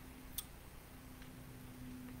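Quiet room tone with a faint steady hum and a single small click about half a second in.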